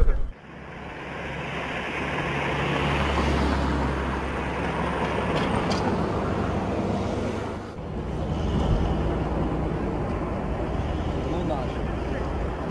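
Heavy military vehicle engines running and moving past, a steady low drone with road noise that swells about three seconds in. It dips briefly near eight seconds, then carries on.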